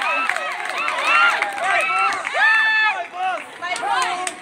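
Drill squad voices calling out in a loud, chant-like way, in repeated rising-and-falling calls with one call held long about two and a half seconds in. Short sharp knocks sound in between.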